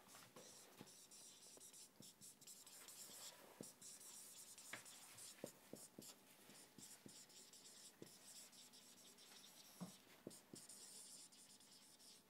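Dry-erase marker writing on a whiteboard, faint, in a run of short strokes and small taps.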